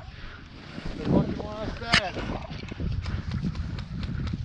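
A man's voice calling out briefly about one to two seconds in, over faint rustling and scattered light ticks.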